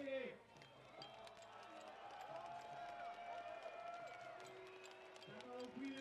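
Arena crowd chanting in long, drawn-out wavering notes, several voices overlapping. Near the end a man's voice begins calling out the start commands in French.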